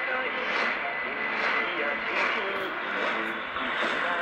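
Speech from a weak medium-wave AM broadcast on 1422 kHz, played through a Sangean ATS-606 portable radio's speaker. The voice sits under a steady hiss of static and sounds thin, with nothing above about 4 kHz.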